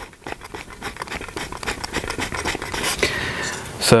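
Angle-adjustment knob of a Work Sharp Precision Adjust knife sharpener being wound all the way up, giving a rapid, even run of small plastic clicks.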